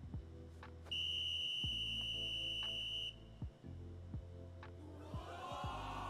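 A volleyball referee's whistle blown in one long steady blast of about two seconds, signalling the end of the set, over background music.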